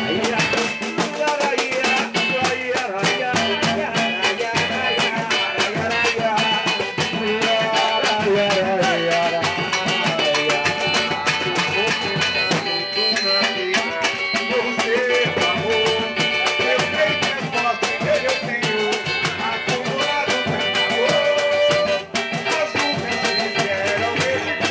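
Live samba batucada: surdo drums and hand percussion keeping a steady, dense samba rhythm, with a small strummed cavaquinho and a man singing through a microphone and PA.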